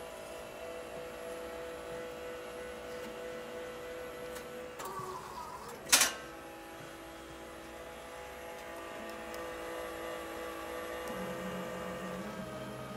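Al-Meister ALM3220 automatic laminator running with a steady motor hum made of several held tones. About six seconds in, a short whine is followed by a single sharp clack from the machine's mechanism. Near the end the hum gains a lower tone.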